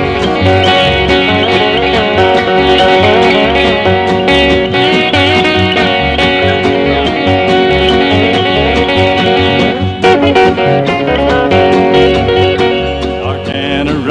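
Country band's instrumental break: banjo picking and fiddle over acoustic guitar and a steady, even bass beat, with no singing.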